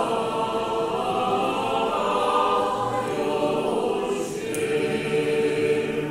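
Unaccompanied Orthodox choral singing: a group of voices chanting a sustained glorification hymn to the Mother of God, holding long notes.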